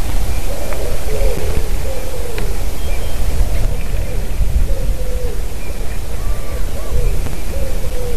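Wind buffeting an outdoor nest-camera microphone, a heavy steady low rumble. Over it comes a series of short, low pitched calls from a distant bird, repeating every half second or so.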